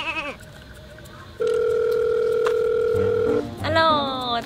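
Telephone ringing tone as a call is placed: one steady electronic tone held for about two seconds. A voice answers "hello" near the end.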